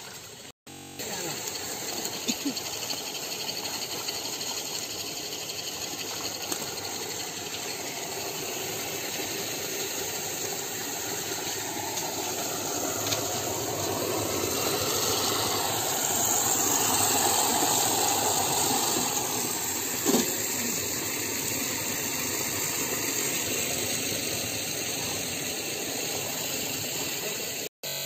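Water running into a holding tank: a steady rushing hiss that grows louder midway, then eases a little before cutting off near the end.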